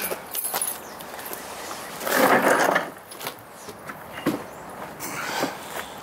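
Gear being shifted about in the back of a van: a loud rustling scrape lasting just under a second, about two seconds in, then a single knock a couple of seconds later, with small clatters around them.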